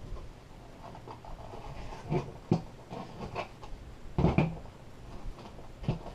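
Cardboard box handling: rustling and scraping with a few knocks, the loudest cluster about four seconds in, as a heavy AGM car battery is pulled out of its packaging.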